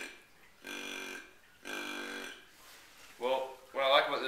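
Primos buck grunt call blown to imitate a deep-voiced whitetail buck: a series of drawn-out grunts, each about half a second long, about one a second. Speech starts near the end.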